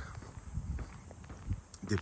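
Footsteps of a person walking on a paved path, irregular soft steps with one firmer step about one and a half seconds in.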